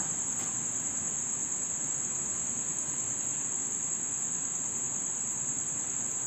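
Crickets trilling: one continuous, unchanging high-pitched tone over a faint hiss.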